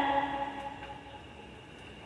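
The end of a girl's melodic Quran recitation, her held note dying away within the first second, followed by a pause with only faint room noise.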